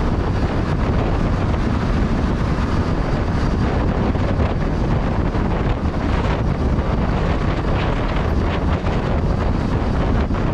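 Steady wind buffeting on the microphone of a camera moving along at road speed, with the vehicle's road and engine noise underneath.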